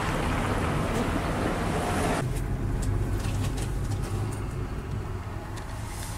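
Outdoor street noise with wind on the microphone and a low traffic rumble; about two seconds in the hiss drops away, leaving a lower, steady rumble.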